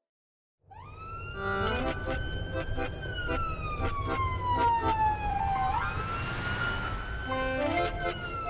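Ambulance siren wailing over low engine and road rumble, starting about a second in. A long tone falls slowly in pitch, then sweeps quickly back up about six seconds in.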